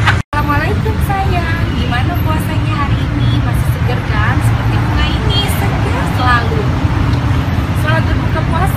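A woman talking over a steady low rumble of city traffic, with a brief dropout about a third of a second in.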